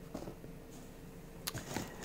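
Faint handling of cardboard firework boxes, with a light click or tap about one and a half seconds in.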